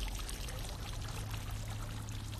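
Tiered garden fountain with water splashing steadily into its basin, over a steady low hum.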